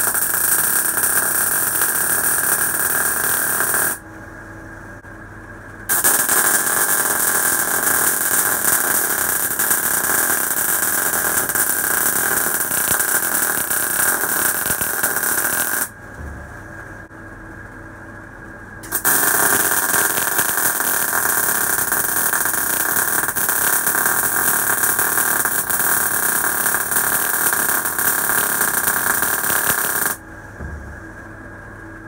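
MIG welding arc from an Uptime MIG160 inverter welder running 0.8 mm solid wire under argon/CO2 gas on mild steel: a steady sizzle in three runs, stopping briefly about four seconds in and again about sixteen seconds in. In the gaps only a low hum remains.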